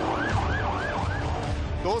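Police vehicle siren in a fast yelp: four quick rising-and-falling wails in about a second, then trailing off, over a low engine rumble.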